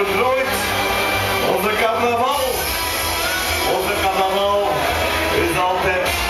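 A man singing into a microphone over a recorded backing track of music with a steady beat, his voice coming in short phrases with gaps between them.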